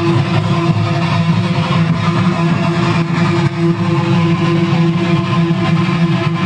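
Live heavy-metal band, with distorted electric guitars and bass guitar playing a steady repeated riff and no drums or cymbals in this passage.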